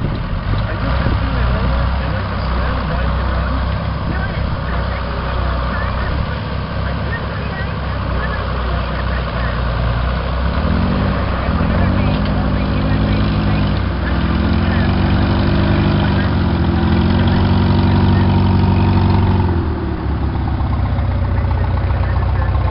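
Farm tractor engine running under load as it pulls a spreader across a field. In the second half the engine note rises, holds and falls several times.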